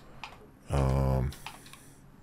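Computer keyboard keystrokes: a few light, separate key clicks, with a brief wordless voiced hum from a man in the middle, the loudest sound.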